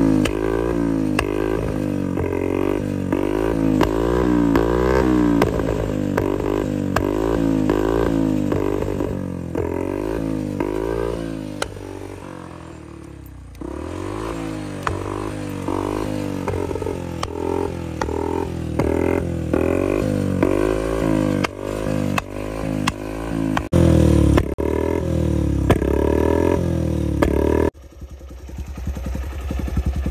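Bajaj Platina 100 cc single-cylinder motorcycle with an aftermarket SC Project-style silencer, revved over and over in short blips about once a second, with popping and crackling from the exhaust as the revs drop. The revving eases off for a couple of seconds midway and the engine dips sharply near the end before picking up again.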